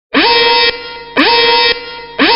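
Warning-horn sound effect blaring in two identical blasts about a second apart. Each blast swoops briefly up in pitch at its start and then holds one steady, buzzy tone for about half a second, signalling a spoiler alert.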